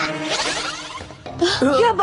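An animated boy's gleeful, raspy snickering laugh over background music, followed by a voice speaking about a second and a half in.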